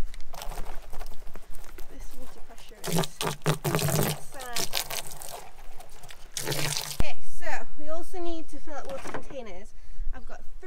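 Water from a garden-hose spray nozzle splashing into a large plastic bin as it is rinsed out, loudest around three seconds in and again briefly near six. After about seven seconds a voice takes over.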